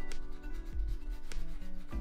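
Bristle shoe brush with a wooden back being stroked back and forth over a leather dress shoe: a repeated dry rubbing, brushing off dust before polish cream goes on.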